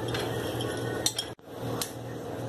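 Metal teaspoon stirring and clinking against a glass Pyrex measuring jug of salty water, with a few sharp clinks about a second in and again near the end.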